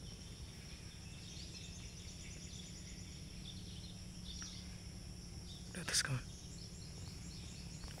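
Quiet outdoor background: a steady high insect drone with faint bird chirps scattered through it, over a low steady rumble.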